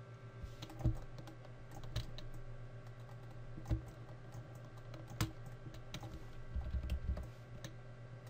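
Scattered clicks and taps of a computer keyboard and mouse, a handful spread over several seconds, over a steady low electrical hum.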